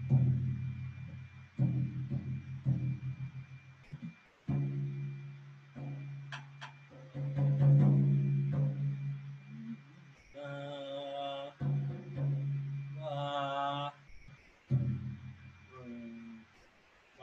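Floor tom head tapped lightly and repeatedly with a drumstick for tuning, each tap ringing at a low pitch, in quick runs. Later come two held, higher tones about ten and thirteen seconds in.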